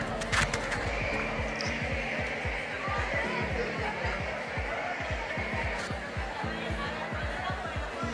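Background music with a steady, thumping bass beat, under the hubbub of a large audience talking in pairs.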